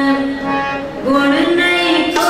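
Sikh kirtan: a woman singing a hymn in long held notes over harmonium accompaniment. The sound softens briefly near the middle, then a new phrase begins.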